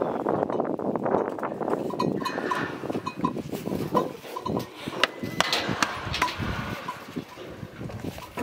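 A bull being rigged in a metal bucking chute: irregular clinks and knocks from the chute rails and the bull rope as it is pulled tight around the bull.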